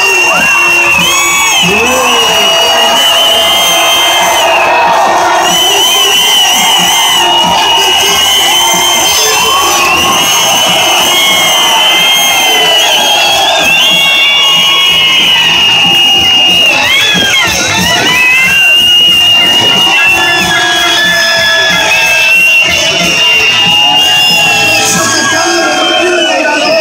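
A large crowd of spectators cheering, shouting and whooping, loud and continuous, with music playing underneath.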